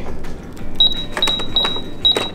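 Toy electronic cash register beeping as its keys are pressed: a quick run of about four high-pitched beeps on one note, starting a little under a second in, with the light clicks of the plastic keys.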